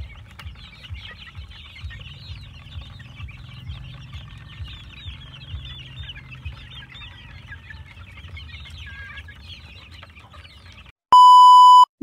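A flock of young gamefowl chickens feeding together, giving a steady chatter of many short, high chirping calls and clucks over a low rumble. Near the end a loud, steady electronic beep tone sounds for just under a second.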